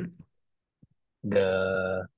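A voice: a short 'mm' at the start, then a drawn-out hesitation sound, a held 'the…' at one steady pitch, from a little past the first second.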